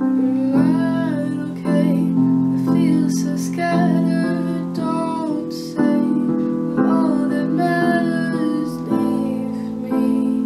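Female voice singing a slow, soft ballad over held piano chords that change about once a second.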